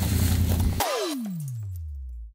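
Edited-in soundtrack: music with a heavy bass cuts off abruptly a little under a second in, replaced by a single tone gliding steadily down in pitch into a low hum that fades out, a pitch-drop transition effect.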